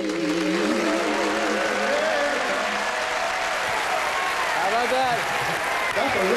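Studio audience applauding at the end of a live song. The last held note dies away over the first couple of seconds, and voices call out over the clapping near the end.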